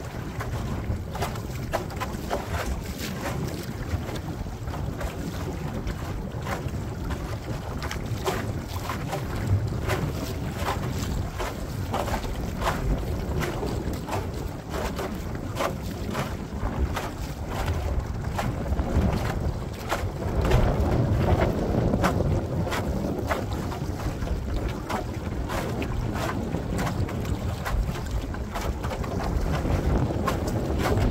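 Wind buffeting the microphone on a small boat out on choppy water, with a steady run of small waves slapping and splashing against the bow; a louder gusty stretch comes a little past two-thirds through.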